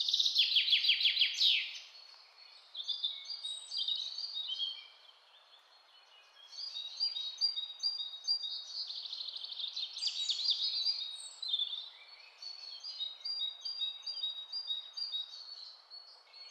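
Small birds chirping and trilling in quick runs of high notes over a faint steady hiss, with short lulls about five to six seconds in and again near twelve seconds.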